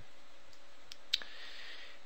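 A few computer mouse clicks, the loudest a little after a second in, over a steady faint hiss.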